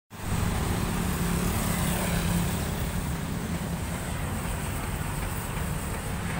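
Steady street traffic noise, with a vehicle engine's low hum standing out during the first two seconds or so.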